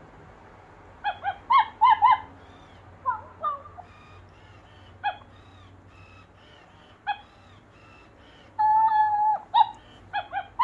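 Club Petz Lusi interactive plush puppy playing electronic puppy yips and whimpers through its small speaker: a run of short high yips starting about a second in, and one longer held whine near the end.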